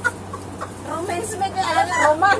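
Women laughing hard, with a high-pitched cackling laugh breaking out about a second in and growing louder.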